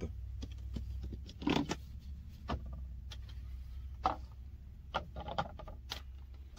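Hard plastic RV leveling blocks clicking and knocking as they are handled and stacked onto one another: a scatter of short, sharp clacks over several seconds. A steady low hum runs underneath.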